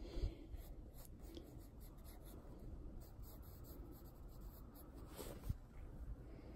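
Faint scratching of a pencil drawing on a sketchbook page in short, irregular strokes, with a soft knock near the end.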